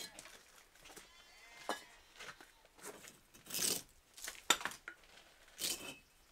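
Firebricks being pulled out of the bricked-up door of a salt-glaze kiln as it is opened after firing: a series of irregular clinks and scrapes of brick against brick, about a second apart, the loudest and longest a little past halfway.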